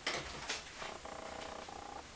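Two sharp clicks, then a door hinge creaking with a pulsing, squeaky tone for about a second.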